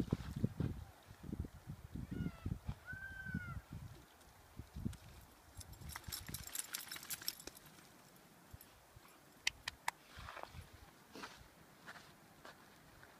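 A wet dog shaking water off its coat about six seconds in: a quick run of fine flapping and spray lasting about a second and a half. Before it come low thumps and a short high chirp; near the end a few sharp clicks.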